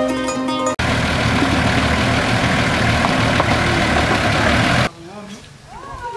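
A plucked-string intro jingle cuts off abruptly under a second in, followed by about four seconds of loud, steady rushing noise. Near the end this gives way to children's high voices outdoors.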